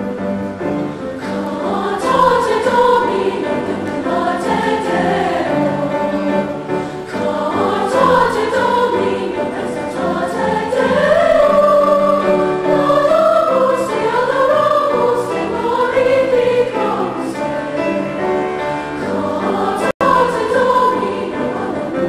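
A large women's choir singing in sustained harmony, with piano accompaniment underneath. The sound cuts out for an instant about two seconds before the end.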